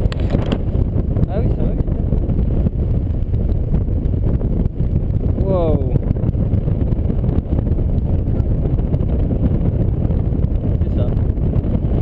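Steady wind noise from the airflow over a tandem paraglider in flight, buffeting the microphone as a dense low rumble. A short voice sound comes in about halfway through.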